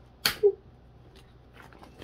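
A plastic trading-card binder page being handled and turned: one short sharp sound about a quarter second in, then a man's brief "ooh", then faint rustling.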